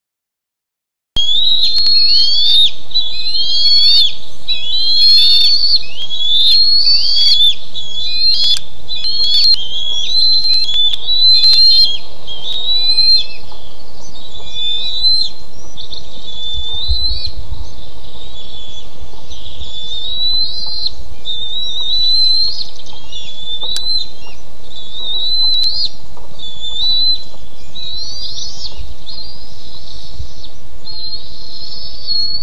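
Bald eagles giving high-pitched, repeated whistling calls that glide up and down, about one or two a second and densest over the first dozen seconds, then sparser, over a steady hiss. These are 7-week-old eaglets calling to warn an intruding eagle off their nest.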